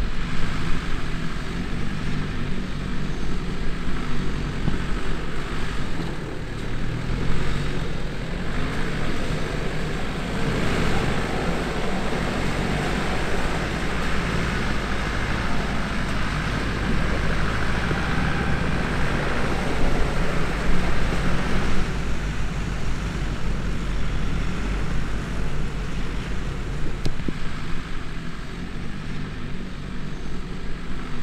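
Engines of several Nissan Patrol off-road SUVs running steadily as the vehicles drive in convoy over boggy ground. The noise swells for a stretch in the middle.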